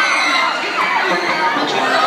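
Audience cheering and shouting loudly, many voices overlapping, with the music's beat dropped out.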